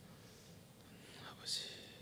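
Soft whispering of a quiet prayer, with one short sharp hiss like a whispered 's' about one and a half seconds in.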